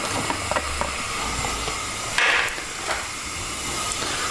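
Tomato stew bubbling and hissing steadily in a thin wok over high heat. A few light clicks and a short louder splash about two seconds in, as chopped bell peppers are tipped in.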